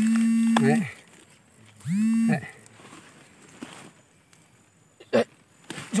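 A man's voice holding two long, flat-pitched syllables, one at the start and one about two seconds in, then a single short knock a little after five seconds.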